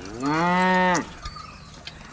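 A cow gives one short moo, just under a second long, its pitch rising at the start and dropping off at the end.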